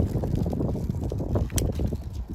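Rumble of wind buffeting the microphone, with a sharp click about a second and a half in.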